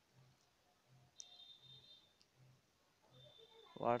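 Two faint clicks about a second apart, with a faint steady high-pitched tone sounding between them, over quiet room tone.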